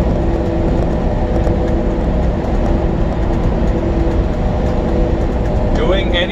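Steady engine drone and road noise inside a semi-truck's sleeper cab while driving, with a faint steady hum running through it.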